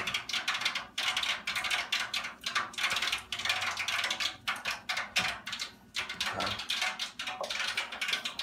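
Chicken wings being squished and turned by hand in a pot of wet flour batter: an irregular wet mixing noise with a few short pauses.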